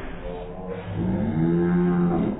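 A voice holding one long, low, steady note, starting about a second in.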